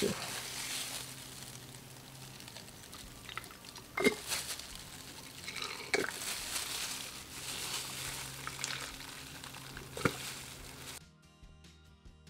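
Sublimation ink trickling from a bottle into an empty plastic ink bottle as a soft, even hiss. A few sharp plastic clicks come about four, six and ten seconds in as the bottles knock together. Background music comes in near the end, as the hiss stops.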